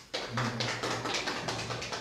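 A small group clapping at a quick, fairly even rate of about six claps a second, starting suddenly just after the start, with a low steady hum underneath.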